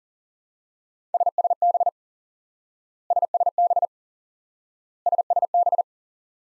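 Morse code at 40 words per minute: the abbreviation SSB (single sideband) sent three times as a single steady beep tone. Each quick burst of dots and dashes lasts under a second, and the bursts come about two seconds apart.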